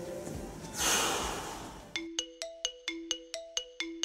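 A rush of noise about a second in. Then, from two seconds in, a jingle of short ringing notes, about four a second.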